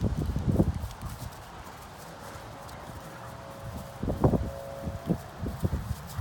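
Heavy paw thuds of a harlequin Great Dane bounding in play: a burst of dull thuds in the first second, then a quieter stretch and a second cluster in the second half.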